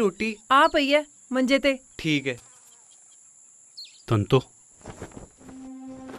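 A steady high-pitched insect drone runs throughout, under a person speaking for the first two seconds and briefly again about four seconds in. A low steady tone begins near the end.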